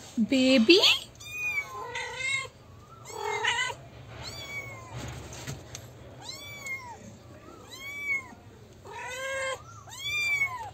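Kittens meowing again and again, about nine short high-pitched calls that rise and fall, spaced roughly a second apart; the loudest and lowest-pitched call comes in the first second.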